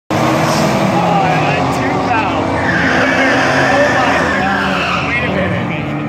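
Drag-racing car engines running loud with tire squeal, as a car spins its tires at the starting line.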